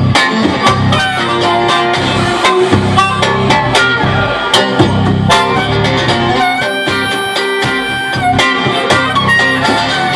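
Live blues band: amplified harmonica played into a microphone as the lead, over electric bass, acoustic guitar and drums. A long held note comes about two-thirds of the way through.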